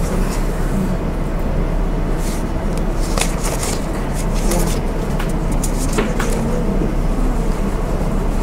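Lecture-room ambience: a steady low hum with faint murmured talk and a few scattered small clicks or rustles.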